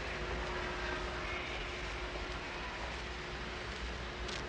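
Steady low background rumble of urban ambience, like distant traffic, with a faint steady hum running through it.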